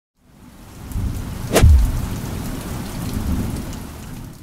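Rainstorm sound effect: steady rain fading in, with one sharp thunderclap and its low rumble about one and a half seconds in, then slowly dying down.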